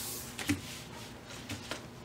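Light handling sounds as a laminated fabric bib is moved and laid down on a wooden tabletop: a few soft taps and rustles, one about half a second in and two more close together about a second and a half in.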